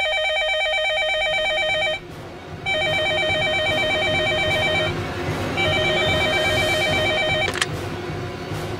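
Electronic warbling ring of a BSNL landline desk telephone: three rings of about two seconds each with short gaps between them. Near the end there is a short clatter as the handset is lifted, and the ringing stops.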